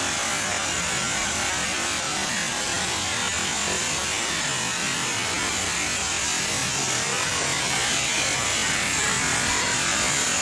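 Several small firework tubes burning on a concrete floor, spraying sparks with a steady hiss.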